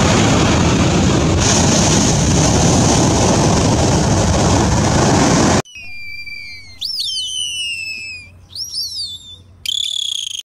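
A loud, steady rushing noise that cuts off abruptly about five and a half seconds in, then dolphin whistles: several high squealing glides that rise and fall, ending on a short steady whistle, over a faint low hum.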